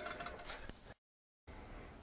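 Pillar drill running faintly with a steady whine that fades over the first second, then cuts off suddenly about halfway. After half a second of silence comes faint low workshop hum.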